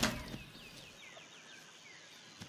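Faint bird chirping: a quick run of short, descending notes, about six a second. It follows a brief sharp sound at the very start that fades within half a second.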